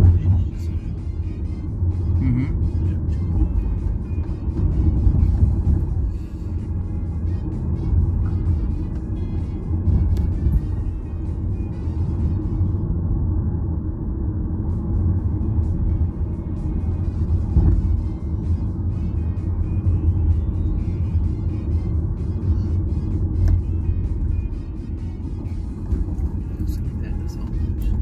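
Steady low road and engine rumble inside a moving car's cabin, with music playing faintly underneath.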